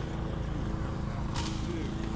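Car engine idling steadily, with a brief click or tap about one and a half seconds in.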